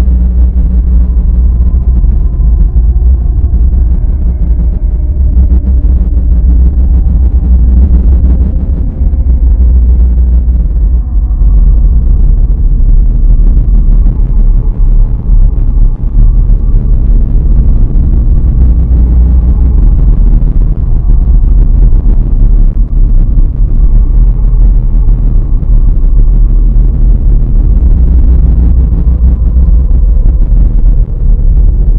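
Dark ambient drone: a loud, steady, dense low rumble with faint held tones above it and no beat.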